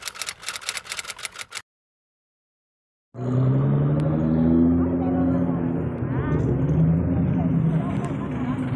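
A TV-static glitch sound effect, a fast rattle of crackles, for about a second and a half, then a short silence. About three seconds in, loud car engines start up, rumbling and revving with a low pitch that slowly rises and falls.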